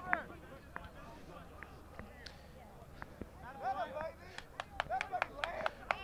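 Faint, distant shouts and calls of rugby players on the pitch, mostly in the second half, with a few short sharp knocks among them.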